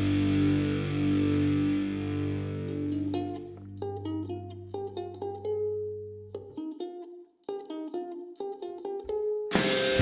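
Music: a held distorted electric guitar chord rings and dies away over the first few seconds. A ukulele then picks a sparse melody of short plucked notes, and the full heavy guitar band comes crashing back in just before the end.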